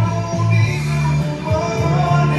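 Live amplified soul song sung by a male singer over accompaniment, with a strong bass line and held notes.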